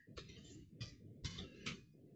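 Keystrokes on a computer keyboard: about five separate clicks at uneven intervals as a line of code is typed and corrected.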